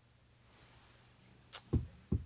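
Quiet room tone, then, about a second and a half in, a short sharp swish followed by a low thump: handling noise from a phone's microphone as the phone is moved in the hand.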